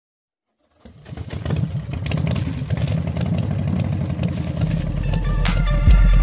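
Two Rockford Fosgate subwoofers in a trunk box playing loud, distorted bass. The sound starts abruptly about a second in and builds. Near the end, electronic music with a deep steady bass note comes in.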